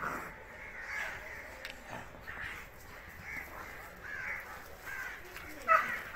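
A series of short, high animal calls, about one a second, the loudest near the end.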